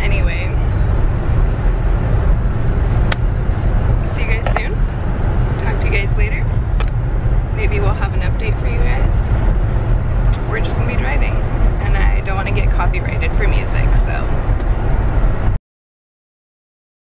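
Steady low road and engine rumble inside a moving car's cabin, with bits of voices over it; it cuts off abruptly near the end.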